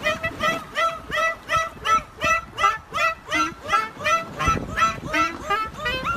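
Clarinet played in a quick run of short, scooped notes that bend up and down in pitch, about three a second, with a nasal, honking edge.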